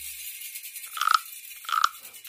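Two brief crunching handling sounds, about three-quarters of a second apart, over a faint hiss, as hands work a red hairband.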